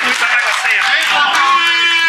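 Spectators' voices during a football match: several people talking and calling out over each other, with a long steady held note coming in over them about a second and a half in.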